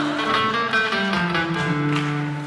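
Acoustic guitar playing a short plucked instrumental run between sung phrases, its bass notes stepping down in pitch.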